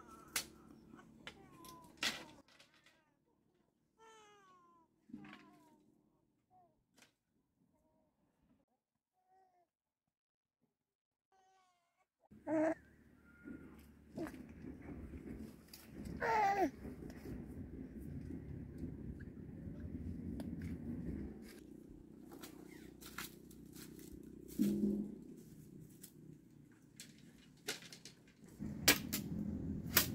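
A baby's squealing coo that rises and falls, about halfway through, over a low steady background. Earlier, split bamboo strips clack as they are worked into a fence, with a few short falling bird calls before a near-quiet stretch.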